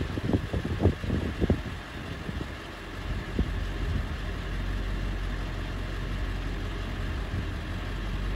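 A vehicle engine idles steadily. There are a few irregular low thumps in the first two seconds.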